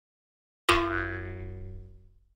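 Edited-in sound effect: a single bell-like tone that strikes sharply less than a second in and rings away over about a second and a half.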